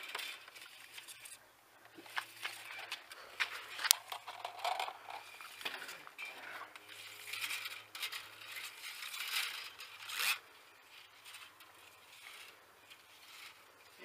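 Drain-snake cable, its tip ground to a rounded point, scraping as it is worked back and forth through a radiator core tube to clear oily sludge from the clogged core. A series of scraping strokes with a sharp click about four seconds in, going quieter for the last few seconds.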